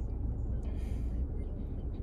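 Low steady rumble inside a car's cabin, with a brief soft hiss a little over half a second in.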